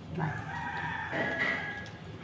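A rooster crowing once: one drawn-out call of under two seconds that steps up in pitch about halfway through.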